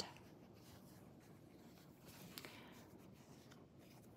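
Near silence: a faint rustle of knit fabric being handled, with one slight tick about two and a half seconds in.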